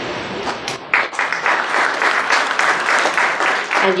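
A roomful of people clapping, the applause thickening about a second in and dying away near the end as a voice comes back in.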